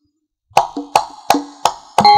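Kendang hand drum playing about five sharp solo strokes after a half-second pause, each with a short pitched ring, as the opening of a new campursari piece; the full band comes in right at the end.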